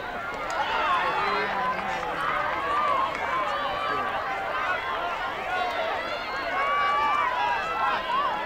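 Many overlapping voices of players and spectators calling out and chattering across the field, a steady hubbub with no single voice standing out.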